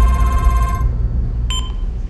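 Mobile phone ringing, then cutting off just under a second in as the call is answered, with a short beep at about a second and a half. A low rumble runs underneath.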